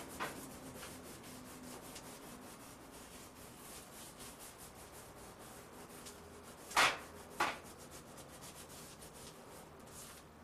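Quick repeated scraping strokes from hand work at a kitchen counter, with two short, louder scrapes about seven seconds in.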